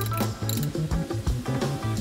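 Background music with a steady low beat, over a run of quick clicks from a ratcheting wrench as the bottom seat-belt anchor bolt is tightened.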